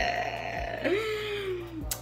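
A person's drawn-out wordless vocal sound. It starts as a noisy, higher note, then becomes a hummed tone about a second long that rises briefly and slowly sinks.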